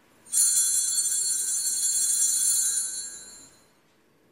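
Small altar bells ringing: a bright cluster of high tones that starts suddenly, holds for about two and a half seconds, then fades away.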